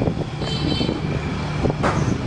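A motor running steadily, with a sharp click just before the end.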